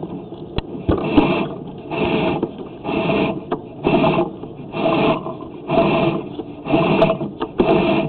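Sewer inspection camera's push cable being pulled back out of a cast iron drain line and fed onto its reel, with a rhythmic scraping rasp about once a second.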